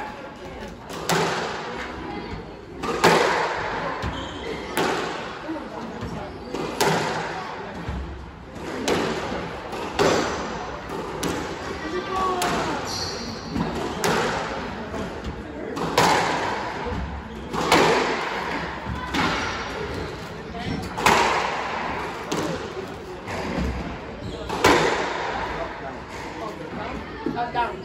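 Squash rally: the ball cracking off rackets and the court walls about every one to two seconds, each hit ringing in the enclosed court, with occasional shoe squeaks on the wooden floor.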